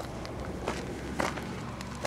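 Footsteps crunching on gravel, a few steps, over the steady idle of a BSA A10 650 cc parallel-twin engine.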